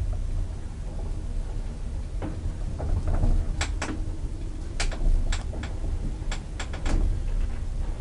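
ASEA elevator, modernised by Hissen AB, travelling in its shaft: a steady low rumble with a dozen or so sharp clicks and rattles scattered through the middle and second half.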